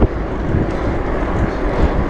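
Strong wind buffeting the microphone of a bike-mounted camera while riding into a headwind, a steady rushing noise.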